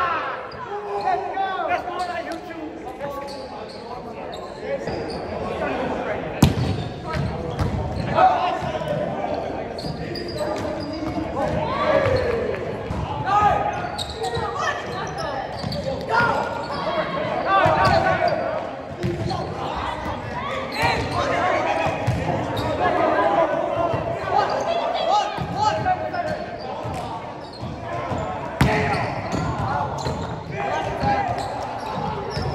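Indoor volleyball play on a gym court: sharp smacks of the ball being hit and striking the floor, the loudest about six seconds in, over players' continual shouts and chatter, all reverberating in the large hall.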